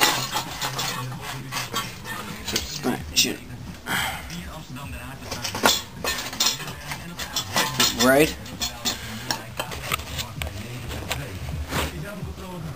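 Irregular light metallic clinks and knocks from moped parts and tools being handled and set down.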